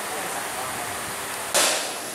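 Steady hissing background noise, then a sudden, louder hiss that starts about one and a half seconds in.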